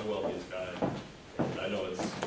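Indistinct murmured speech, with a sharp knock or thump about a second in.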